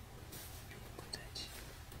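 Quiet room tone: a steady low hum and faint hiss, with a few soft clicks and a short breathy sound about one and a half seconds in.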